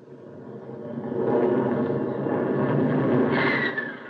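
Radio-drama sound effect of a jet fighter making a gunnery pass on a towed target. The jet rush swells up over the first second and holds. A falling whine comes near the end as it goes by.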